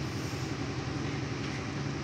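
A steady low machine hum with a background haze of noise, unchanging throughout.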